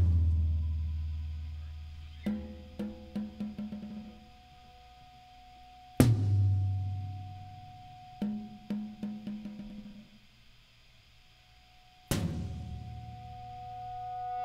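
A band playing slow, sparse music on drum kit, bass and synthesizer: three big accented hits about six seconds apart, each with a cymbal crash and a low note ringing out for a few seconds. A short run of quick drum strokes falls between the hits, over a steady held synth tone.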